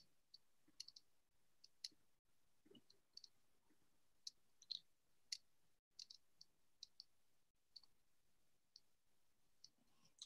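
Near silence broken by faint, scattered small clicks at irregular intervals, roughly two a second.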